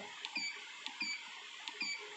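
Keypad beeps of an Essae SI-810PR receipt-printing scale: three short, high beeps, one for each press of a soft key as the display steps through its function options.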